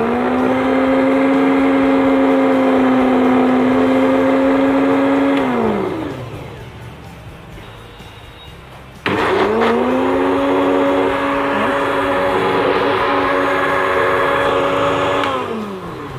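Electric countertop blender pureeing silken tofu in two runs, the first about five and a half seconds and the second about six. Each run is a steady motor whine that drops in pitch as the motor winds down, and the second starts abruptly about nine seconds in.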